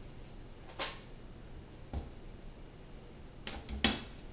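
A few short taps and scrapes of a kitchen utensil against a plate and cutting board while stuffing is scooped and patted into a fish, the loudest two close together near the end.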